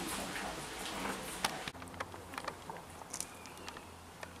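A sharp click about a second and a half in, followed by scattered small clicks and taps over a faint outdoor background.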